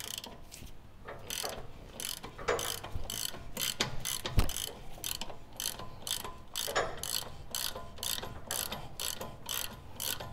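Hand socket ratchet clicking in steady, evenly spaced strokes as a radius arm lower bracket bolt is backed out. The bolt has been broken loose with a breaker bar and now turns under the ratchet. One duller knock comes about four and a half seconds in.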